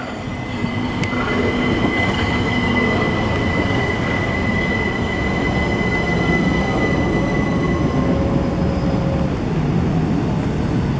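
Southern Class 377 Electrostar electric multiple unit running into the platform and braking, its noise growing over the first couple of seconds. A steady high whine holds through most of it, and a lower tone falls in pitch near the end as the train slows.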